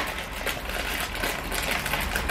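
Packaging and items being handled on a kitchen cupboard shelf, likely a cracker packet: a quick, uneven run of light rustling and small clicks.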